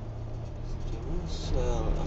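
Car cabin noise while driving: a steady low engine and road hum that steps up to a higher drone about a second in. A man's voice starts talking over it.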